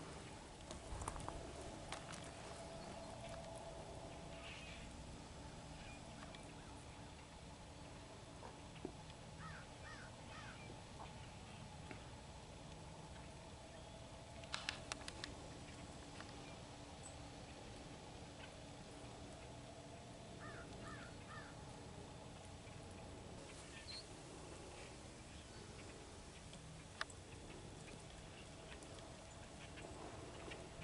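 Faint outdoor morning quiet with distant birds calling: two short series of about three calls each, about ten seconds in and again about twenty seconds in. A few brief soft clicks, the loudest about fifteen seconds in.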